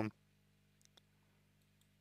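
Near silence: room tone with a faint steady low hum, after a man's voice trails off at the very start. Two or three faint clicks come just under a second in.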